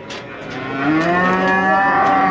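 A bull mooing: one long, steady low call that begins just after the start, swells and is held past the end.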